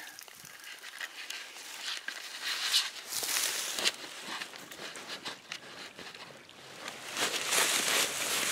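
Dry grass and reed stalks rustling and crackling close to the microphone, in uneven bursts with small knocks, loudest about three seconds in and again near the end.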